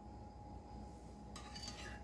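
Faint scraping and clinking of a metal spoon as thick yogurt is scooped and poured into a plastic cup, starting about one and a half seconds in, over a steady low hum.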